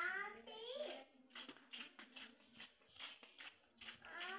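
A young child's high-pitched voice chattering and babbling without clear words, with short bursts in between.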